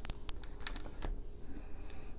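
A few light, irregular clicks or taps over a low room hum.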